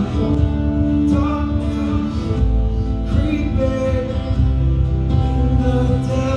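Live band playing: sung vocals over electric guitar, bass, keyboards and drum kit, with a deep bass note coming in about two and a half seconds in.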